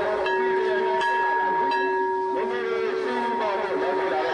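A steady held tone with a few higher steady tones above it, sounding together without a break, under the voices of a crowd.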